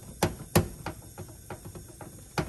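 Glass test tube clinking against a wire test-tube rack as it is lifted out: two sharp clicks in the first half second, then a run of lighter irregular ticks.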